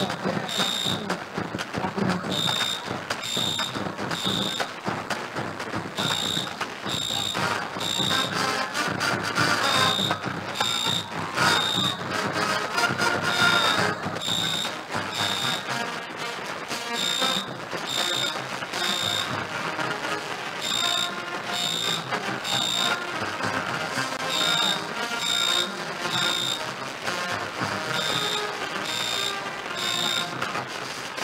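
Marching band music playing on the field. A high electronic beep repeats through it, about two beeps a second in short runs.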